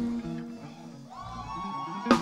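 Soft praise-band music: held notes fade out over the first second and a new sustained note comes in about halfway, leading into the band picking up.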